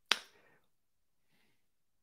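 A single sharp click just after the start, dying away within a fraction of a second, followed by a faint soft sound about halfway through.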